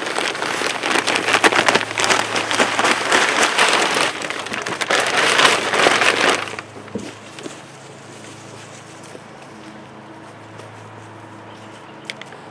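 Potting mix poured from a bag into a container and crumbled by a gloved hand: a dense, gritty patter of falling soil that stops about six and a half seconds in. After that only a faint low hum remains.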